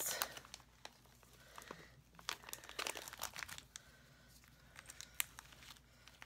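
Clear plastic pocket-letter sleeve page crinkling and rustling as it is handled and turned over, with scattered light clicks; the loudest crinkle comes at the start.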